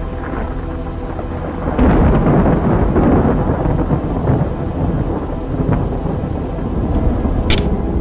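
Thunder sound effect: a heavy clap about two seconds in that rumbles on for several seconds, then a sharp crack near the end. A sustained music drone is heard before the clap.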